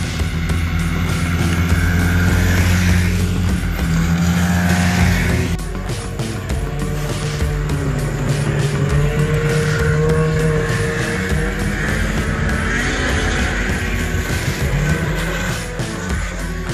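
Rock music with a steady beat, over snowmobile engines running past, their pitch rising and falling in the middle.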